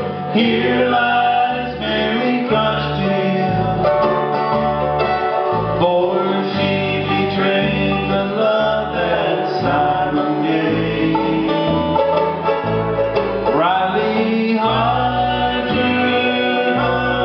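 Live bluegrass band playing an instrumental break: banjo and guitar picking quick notes over a bass line that steps between alternating notes about twice a second.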